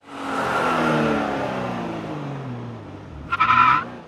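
Vehicle sound effect: an engine winding down, its pitch falling steadily as it slows to a stop, ending in a short high squeal of brakes near the end.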